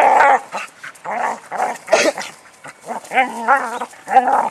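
Border collie making a series of short, pitched whines and yips as she works the rock with her nose. The loudest call comes right at the start.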